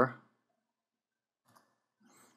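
A single faint computer mouse click about one and a half seconds in, choosing Paste from a right-click menu, after the tail end of a man's word; otherwise near silence.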